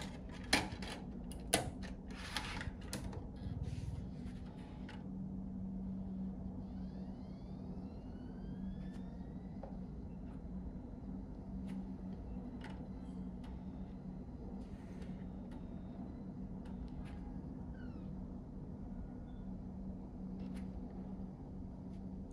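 External USB DVD drive: a few sharp clicks and knocks in the first two seconds as the disc is seated and the tray pushed shut, then the disc spinning up with a faint rising whine and a steady low hum while the drive reads it.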